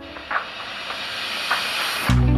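A steady hiss with two faint soft ticks, one about a third of a second in and one about a second and a half in.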